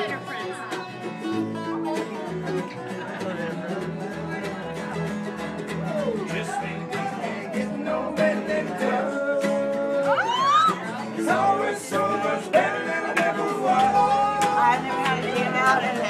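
Live acoustic jam: acoustic guitar playing with a plucked upright bass underneath, and voices singing along over crowd talk.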